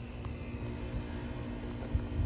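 Quiet background: a low rumble and a faint steady hum, with one faint click. No bird call.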